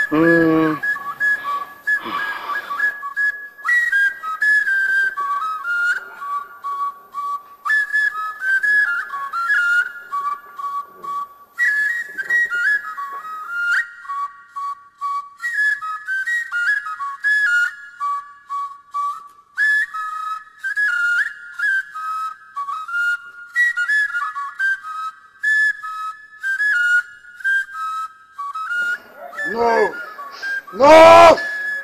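A high, flute-like whistled melody of short notes, played in phrases that pause every few seconds, as background music.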